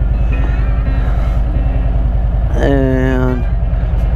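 Harley-Davidson Road Glide's V-twin engine running at low revs with an even, fast low pulse while the bike rolls slowly. A brief held voice note sounds over it about two and a half seconds in.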